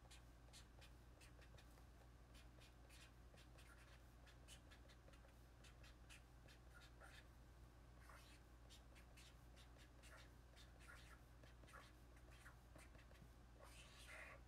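Faint scratching of a felt-tip marker writing on a paper tanzaku strip, a quick, irregular run of short strokes over a low steady hum.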